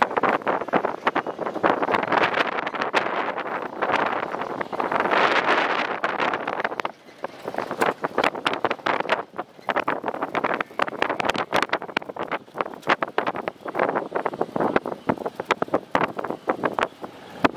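Wind buffeting the microphone: a rough rushing noise full of crackles, heaviest for the first seven seconds, then dropping and turning gustier.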